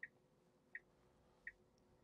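Tesla turn-signal indicator ticking faintly, three soft ticks about three-quarters of a second apart, with the blinker on for a left turn; otherwise near silence in the cabin.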